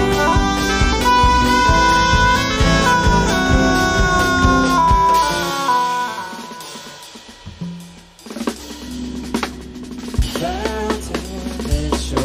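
Live improvising band with drum kit and bass under a long, held lead note that bends up and then down. After about five seconds the band thins out and fades. It then comes back sparsely: a low bass drone, scattered notes and a few drum hits.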